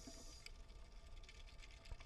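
Near silence: faint underwater background with a low rumble, and a faint high hiss that fades out in the first half second.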